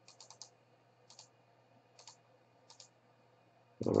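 Light clicks from a computer mouse and keyboard: a quick run of three at the start, then single clicks about a second apart.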